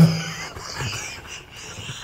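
A man laughing hard with almost no voice, mostly breathy air sounds, fading toward the end.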